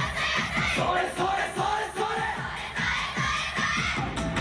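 Many dancers shouting calls together over loud amplified yosakoi dance music with a quick, driving beat.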